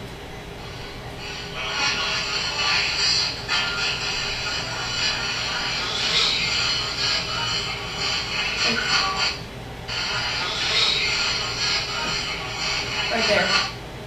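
EchoVox ghost-hunting app playing through a speaker: a continuous hissing stream of chopped, echoing speech fragments and static, dipping briefly just before ten seconds in.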